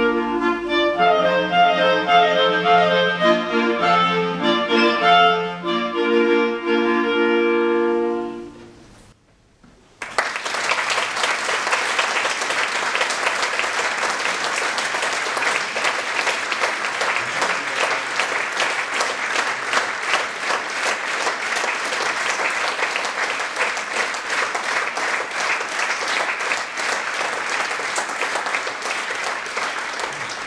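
Clarinet quartet playing, ending on a held chord that dies away about eight seconds in. After a second's pause, an audience applauds steadily for the rest of the time.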